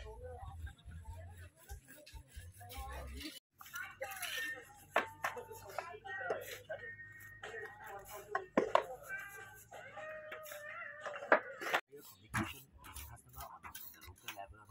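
Several people talking, with a few sharp clacks standing out above the voices; the sound breaks off abruptly twice.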